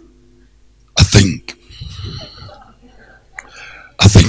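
A loud, sudden sneeze into a close microphone about a second in, in two quick bursts, followed by fainter scattered sounds.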